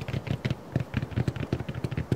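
Fast, uneven fingertip tapping on a hard surface, about seven taps a second.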